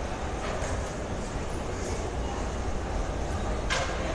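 Steady low rumble and hiss of background noise picked up by a phone microphone in a large hall, with a brief rushing burst near the end.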